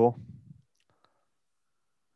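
A man's voice finishing a word, then near silence with one faint click about a second in.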